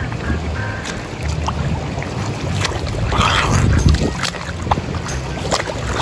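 Pool water splashing and churning as a swimmer pushes off and swims front crawl, with a louder burst of splashing about halfway through and another at the end, over a steady wind rumble on the microphone.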